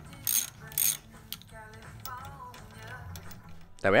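Socket ratchet wrench clicking in two short bursts about half a second apart as it works a motorcycle fuel-tank mounting bolt, followed by faint radio music with singing.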